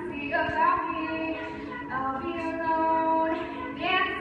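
Teenage girls' a cappella group singing: a lead voice at the microphone over the others' sustained backing harmonies, with no instruments.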